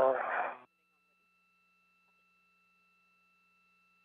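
A voice over the spacewalk radio loop, thin-sounding and ending abruptly under a second in, followed by near silence.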